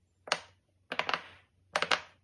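Silicone pop-it fidget toy bubbles pressed by fingers, popping with crisp clicks: a single pop, then two quick runs of several pops each.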